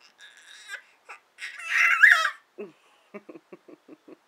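A six-month-old baby squealing in a high pitch, the loudest squeal about two seconds in, followed by a quick run of short, lower sounds near the end.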